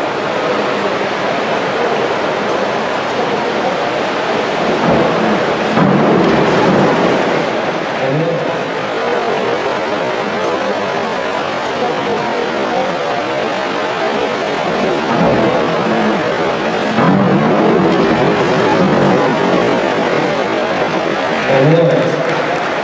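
Steady, reverberant din of an indoor pool hall: a crowd chattering, with water noise echoing off the hard walls.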